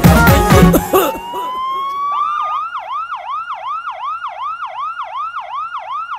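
The music stops about a second in and an electronic siren winds up, then goes into a fast repeating yelp, about two rise-and-fall cycles a second.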